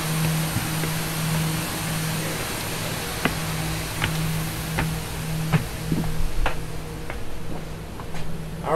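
Footsteps going up the coach's entry steps and along its floor, short sharp steps about every 0.7 s in the second half, over a steady low hum.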